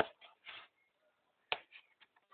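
Cardboard box being pulled apart by hand: a sharp snap at the start and another about a second and a half in, with soft scraping of the cardboard flaps just after the first.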